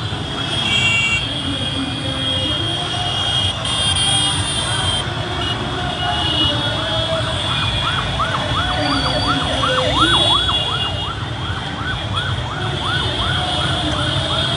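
A siren yelping in quick rising-and-falling whoops, about three a second, starting a few seconds in, over the dense rumble of a slow street convoy of motorcycles and cars.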